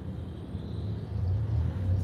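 Low, steady rumble of a vehicle heard from inside its cabin, growing slightly louder through the moment.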